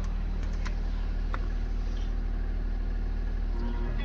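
Audi A7 engine idling steadily, heard from inside the cabin. Near the end, music starts from the car's stereo.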